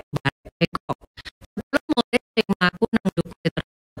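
A voice chopped into rapid stuttering fragments, about eight a second with silence between, like skipping or corrupted audio; a brief gap near the end.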